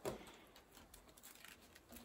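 Faint crackling and rustling of a stiff, partly peeled ivy vine being twisted by hand, with a short click at the start and scattered light ticks after.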